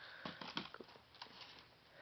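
Faint scattered light clicks and rustles: firework packages being handled.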